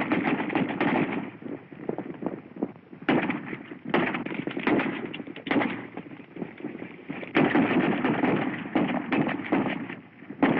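Gunshots from a horseback chase on a 1930s Western soundtrack: about a dozen shots fired irregularly over the continuous rumble of galloping horses. The old film sound is muffled and lacks treble.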